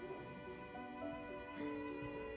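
Soft background music: a slow violin melody of held notes.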